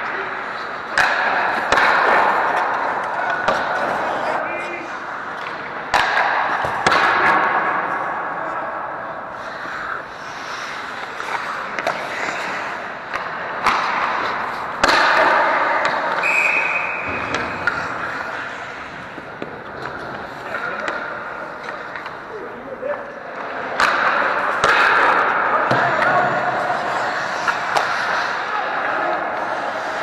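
Ice hockey play close to the goal: skate blades scraping and carving the ice in swells, with sharp knocks of sticks and puck against pads, ice and boards. A short high whistle sounds about halfway through.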